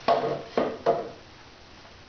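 Three sharp knocks in the first second as a go-kart wheel and tire are flipped over and set down on a steel bench-top tire changer, each with a short ringing decay, the first the loudest.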